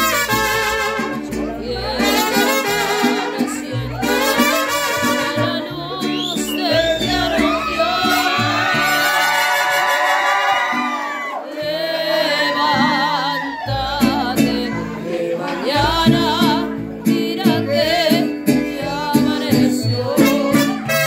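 Mariachi band playing and singing: trumpets and violins with vibrato over a steady rhythm, with sung vocals.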